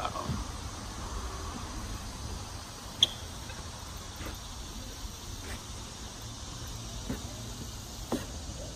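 Outdoor background noise: a steady low rumble on the microphone under a faint, even high hiss, with one sharp click about three seconds in.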